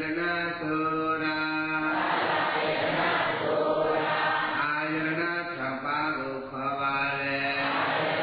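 Buddhist chanting by a male voice, held on long, nearly level notes with brief breaks between phrases.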